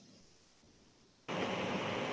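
Dead silence that gives way, a little over a second in, to a steady hiss of background noise on a live video call's audio line.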